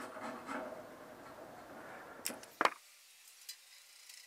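Bare metal on a bandsaw frame being scraped clean by hand for an earthing point, a rough rasping that fades over the first second or two. Then come two sharp clicks a moment apart, followed by near silence.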